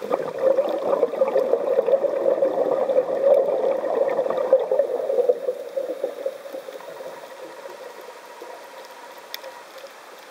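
Air bubbles from a scuba diver's exhaled breath gurgling underwater, heard through the camera housing. The bubbling lasts about five seconds, then fades out.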